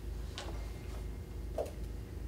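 Meeting-room tone: a steady low hum with two faint clicks, about half a second in and a second and a half in.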